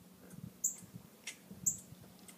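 Two short, high-pitched chirps about a second apart, over a faint low hum.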